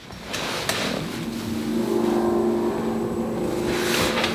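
A steady machine-like hum with a rushing noise that builds over the first couple of seconds, then holds level with a low drone.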